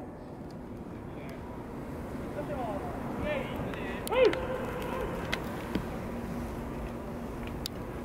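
Open-air ballpark background noise, steady throughout, with distant voices calling out a few times about three to four seconds in, and a few faint clicks later on.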